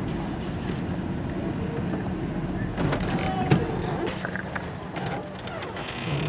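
Steady low rumble of a car's engine and road noise heard from inside the cabin, with a few faint knocks and rustles.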